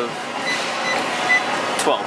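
About four short, high beeps from a Life Fitness treadmill console as the incline-up button is pressed repeatedly, over the steady whir of the running treadmill.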